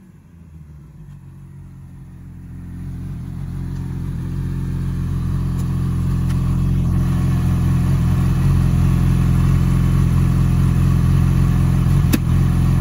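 Sport motorcycle engine running at a steady low speed, growing louder over the first few seconds as the bike rides up and stops, then idling evenly.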